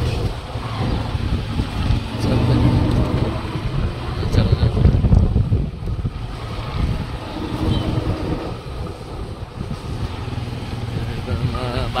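Motorcycle engine running as the bike rides along a street, with wind rumbling on the microphone; the loudness swells and eases through the ride.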